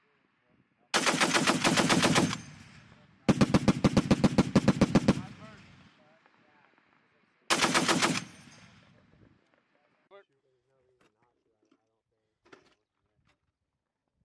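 M2 .50-caliber heavy machine gun firing three bursts: one of about a second and a half, a longer one of about two seconds, then a short one, with the shots coming at roughly eight a second and a rolling echo after each burst. A few faint clicks follow near the end.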